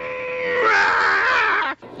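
A Muppet character's strained, drawn-out vocal wail from an inserted comedy clip. It starts as a held note, swells louder about half a second in, and cuts off sharply near the end.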